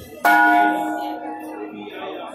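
A metal bell struck once, about a quarter-second in, ringing with several clear tones at once that fade over about a second and a half, over the murmur of a crowd.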